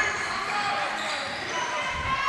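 Live basketball game sound in a gymnasium: a basketball dribbling on the hardwood court under the background chatter of the crowd.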